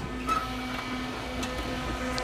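Steady electrical hum of a powered-on Bourg BB3002 perfect binder standing ready, not yet binding, with a few faint ticks as its hood is handled.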